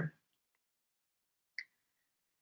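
Near silence, broken once about one and a half seconds in by a single short click.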